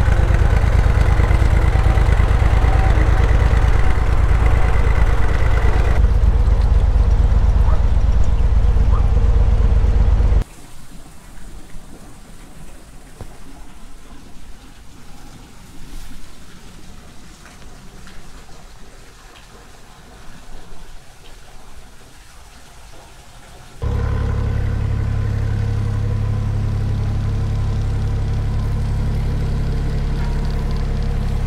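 Steady low rumble of a narrowboat's diesel engine running. It cuts out abruptly about ten seconds in, giving way to much quieter, faint outdoor sound, then returns just as steadily for the last several seconds.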